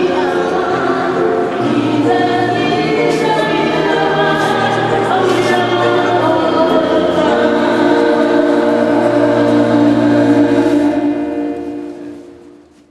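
A choir singing sustained notes, fading out near the end.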